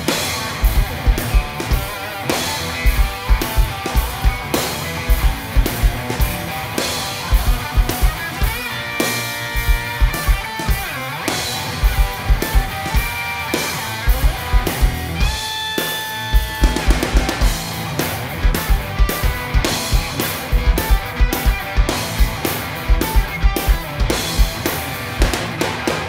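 Instrumental blues-rock section: electric guitar played over a driving drum kit, with a steady bass-drum pulse and snare hits. There is no singing, and the guitar holds one long note about midway through.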